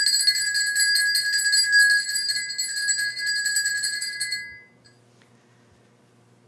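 Altar bells shaken in a rapid jingling peal at the elevation of the chalice during the consecration, stopping about four and a half seconds in.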